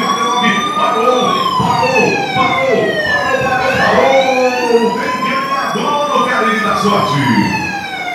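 Siren sound effect wailing, rising and falling slowly twice, with voices underneath.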